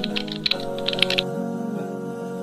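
Fast computer-keyboard typing clicks that stop a little over a second in, over soft instrumental background music with steady held notes.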